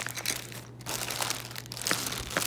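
Clear plastic zip-top bags crinkling irregularly as a hand shifts and sorts through them, with a sharper crackle near the end.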